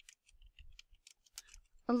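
Typing on a computer keyboard: a run of faint, quick, irregular key clicks.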